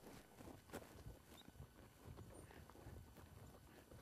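Faint hoofbeats of a horse walking on soft arena dirt, scattered soft knocks in near silence.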